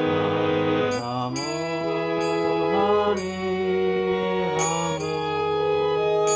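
Paul & Co hand-pumped harmonium playing a slow melody: sustained reedy notes over a held lower note, the tune moving to a new note about every second.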